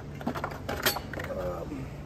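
Handling noise from fitting abrasive paper onto a Silverline drum floor sander: light clicks and rattles of the machine's metal parts and the sanding sheet being pressed into place, with one sharper click a little under a second in.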